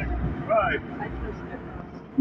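Low rumble inside a moving car's cabin, with a short voiced sound from a person about half a second in.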